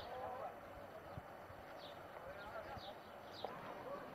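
Faint, indistinct voices of people talking at a distance, with a few light clicks.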